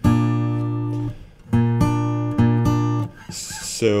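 Acoustic guitar fingerpicked: a B-flat bass note on the A string plucked together with the third fret of the B string and left to ring for about a second. Then four quick plucks alternate between the bass and the B string.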